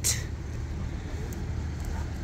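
Steady low rumble of road traffic in the background.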